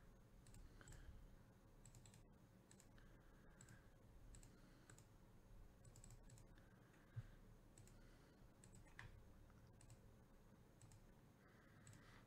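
Near silence: room tone with faint, scattered clicks from a computer mouse and keyboard being worked, and one slightly louder tap about seven seconds in.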